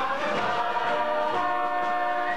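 Mixed chorus of children's and adults' voices singing together on stage, holding long sustained notes.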